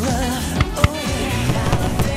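Pop song playing as a soundtrack, with a sung vocal line over a band and a sharp percussive hit a little under a second in. No firework bangs stand out from the music.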